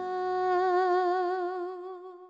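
A female voice holds the song's final long note with a slow vibrato, fading out near the end. The low accompaniment under it drops away about a second in.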